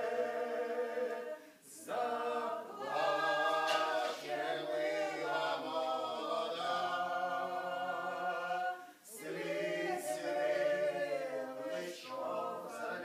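A small mixed group of men and women singing a Ukrainian riflemen's folk song a cappella in chorus, in long held notes. The singing breaks off briefly for a breath about a second and a half in and again near the nine-second mark.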